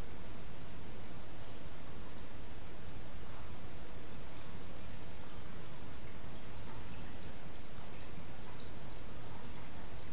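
Water running and dripping from a soaked cloth towel as it is wrung out hard by hand over a container of water: a steady trickle.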